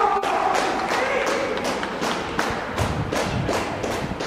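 Footballers shouting in celebration, then a run of sharp claps and thuds, several a second, as teammates hug and slap each other's backs.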